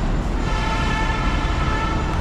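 Road traffic at an intersection, a constant low rumble from passing trucks and motorbikes. About half a second in, a steady high-pitched tone joins it and holds.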